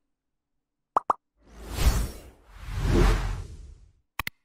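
Two quick pops, then two swelling rushes of noise with a deep rumble, each rising and fading over about a second: sound effects at the start of a video being played.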